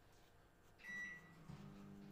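A single short electronic beep a little under a second in, followed about half a second later by a low, steady electrical hum that starts up and keeps running.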